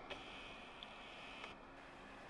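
Almost silent outdoor background with a couple of faint ticks.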